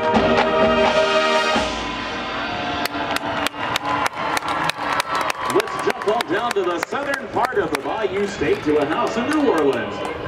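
A marching band holds a final brass chord that cuts off about a second and a half in. About three seconds in, a steady series of sharp clicks begins, roughly three a second.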